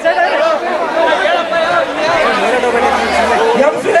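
Speech: a man talking over the chatter of a crowd.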